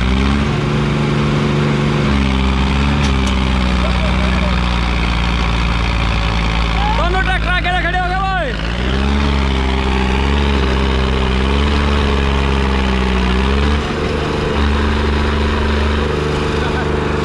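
Diesel tractor engines of a Sonalika DI-35 and a Farmtrac 60 EPI running hard under full load as they pull against each other. Their pitch sags and wavers as they lug. A man shouts briefly about seven seconds in.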